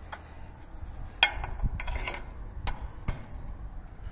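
Several short, sharp metal clicks and knocks, the loudest about a second in: a locking pin being fitted into the aluminium hinge bracket of a fold-over tower.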